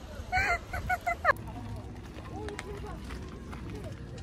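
A woman laughing in four short, high-pitched bursts in the first second or so, then a cut to quieter outdoor background with a low wind rumble and faint distant voices.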